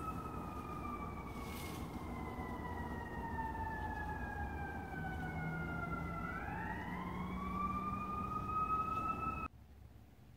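A siren wailing: one long tone that slides slowly down in pitch for about six seconds, then rises again, over a steady low rumble. It cuts off suddenly near the end.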